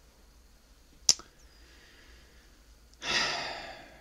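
A man sighing: a loud breath out starts near the end and fades over about a second. Before it, about a second in, there is a single sharp click.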